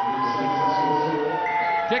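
Stadium hooter sounding a long, siren-like tone that rises slightly and then slowly falls, marking the end of match time.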